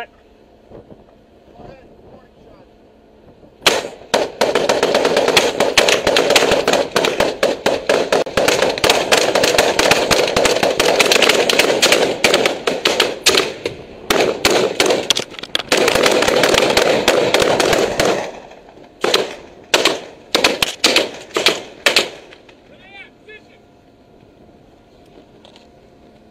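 Sustained rapid automatic gunfire starting about four seconds in and lasting about fourteen seconds, followed by several short separate bursts that stop a few seconds later.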